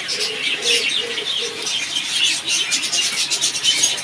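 Many caged pet birds chirping together in a dense, overlapping chatter. A low coo sounds through the first second and a half.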